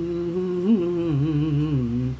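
A man humming a melody with closed lips, unaccompanied: one unbroken phrase with small turns in pitch that stops just at the end.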